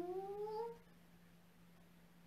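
A woman's drawn-out, intoned "hang" breathing sound, sliding steadily upward in pitch and ending about a second in. A quiet room with a faint steady hum follows.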